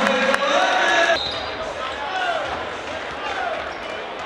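Basketball game sound on a hardwood court: sneakers squeaking in short gliding squeals and the ball bouncing, over voices in an arena. It gets somewhat quieter about a second in.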